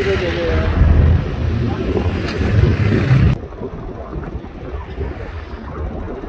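Wind rushing over the microphone with low road rumble from a moving car, loud for about three seconds and then dropping suddenly to a softer hiss.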